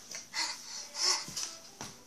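A young child breathing out in a few short, breathy huffs close to the microphone.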